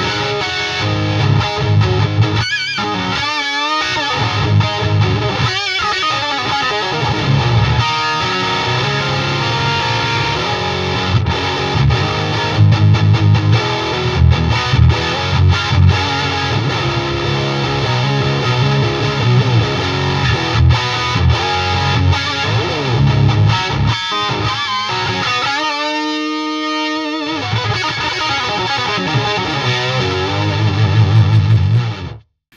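Distorted electric guitar played through an Eventide H9 Harmonizer pitch-shift effect: sustained notes and runs, with swirling, sweeping pitch-shifted tones a few seconds in and again near the end.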